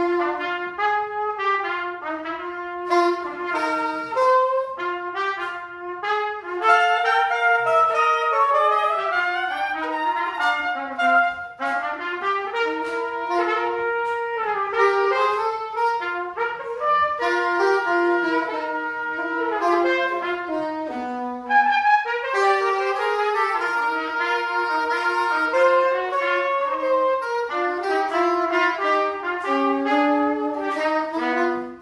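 A trumpet and a soprano saxophone playing a jazz duet with no other accompaniment, two melodic lines weaving around each other without a break.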